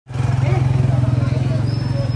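A small engine running steadily with a fast, even low throb, with people's voices talking over it.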